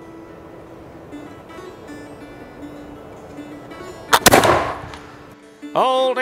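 A Pedersoli Brown Bess .75-calibre flintlock musket fires once about four seconds in, a single sharp shot from a 200-grain black powder charge, ringing briefly after.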